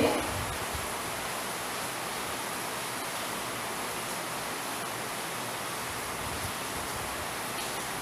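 Steady hiss of room and recording background noise, even throughout, with no clear foreground sound.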